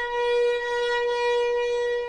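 A single long note held steadily on a wind instrument in an opera orchestra, swelling slightly early on, with the strings faint beneath.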